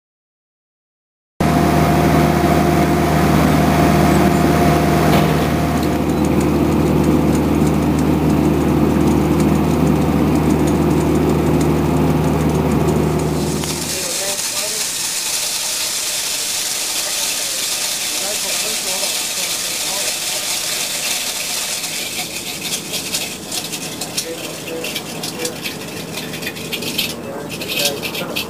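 A machine's engine running steadily with a low hum. About halfway through it gives way abruptly to a steady hiss with scattered clicks and knocks. In this stretch PVC sewer pipe is being pulled into a directionally drilled bore.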